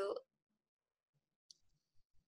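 A single short, sharp computer mouse click about one and a half seconds in, amid near silence after the end of a spoken word.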